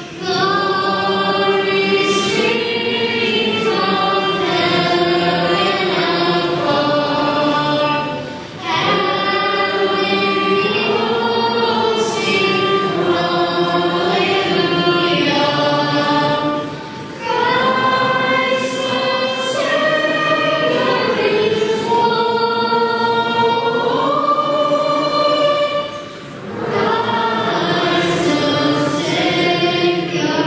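A choir singing a hymn in long sung phrases, with a brief break about every eight or nine seconds.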